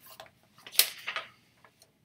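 Pages of a large book being handled and turned: a few short paper rustles and taps, the loudest a little before a second in.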